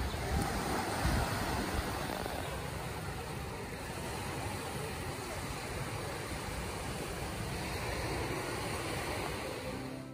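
Small waves breaking and washing up on a sandy beach, a steady surf wash, with wind buffeting the microphone in the first couple of seconds.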